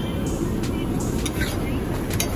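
Street-stall background noise with a steady low traffic rumble, and a few light clicks and scrapes of a metal spatula working a flatbread on an iron tawa.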